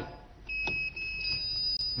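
Electronic quiz-show buzzer beeping as a contestant buzzes in to answer: a short high beep, a brief break, then a longer held tone.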